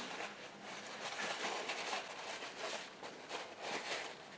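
Faint rustling and rubbing of a paper towel as a small metal bobbin case is wiped clean of buffing compound.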